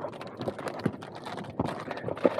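A car windshield sunshade being pulled down and folded by hand: irregular rustling with a few short knocks.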